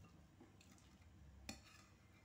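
Near silence with a low hum, under faint scratching of a pencil drawing on paper, and one short sharp tap about one and a half seconds in.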